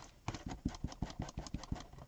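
Ink blending tool dabbed rapidly along the edge of a cardboard notebook cover to apply distress ink: a quick, even run of light taps, about seven or eight a second.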